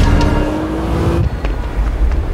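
A car driving past with its engine running, heard as a slowly rising tone that stops a little past one second in.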